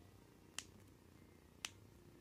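Two short, sharp clicks about a second apart over near silence.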